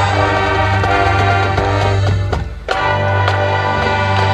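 High school marching band playing sustained full-band chords. The sound drops away for a moment about two-thirds of the way through, then the whole band comes back in at full volume.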